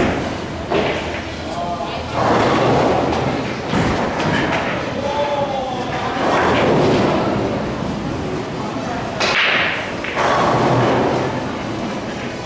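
Pool balls being struck with a cue and knocking together, a few sharp thuds, over people talking.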